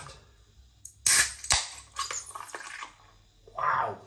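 A Guinness Draught nitro widget can being opened about a second in: a sharp crack of the ring-pull and a loud hiss of gas rushing out, followed by softer fizzing and small clicks.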